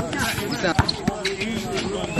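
Basketball bouncing on an outdoor hard court, a few separate sharp bounces, among players' voices.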